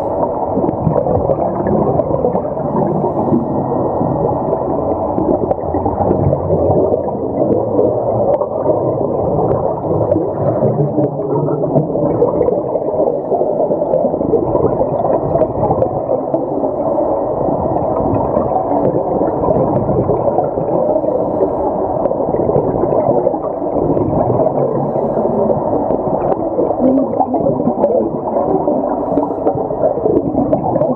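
Continuous muffled underwater noise picked up through an underwater camera, a dense low rumble and gurgle that holds steady throughout.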